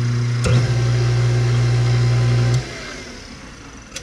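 Hot tub jet pump's electric motor running dry, with no water in the tub, with a steady hum and a click about half a second in. About two and a half seconds in it shuts off, and the hum falls in pitch as the motor spins down.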